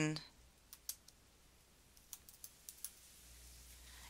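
Faint computer keyboard keystrokes: a handful of scattered key clicks in two short runs as a search term is typed.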